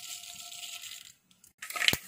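Sunflower oil heating in a nonstick kadai: a steady hiss for about the first second, a short silence, then crackling and spattering as the hot oil bubbles, with one sharp click near the end.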